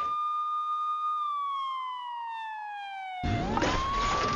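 Ambulance siren wailing: a high tone held for about a second, then sliding steadily down for about two seconds. Near the end it sweeps back up as a rumbling background sound comes in.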